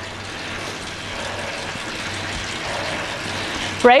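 Indoor bike trainer running steadily as the rider pedals at an easy recovery cadence: a constant whir and hiss with a faint low hum.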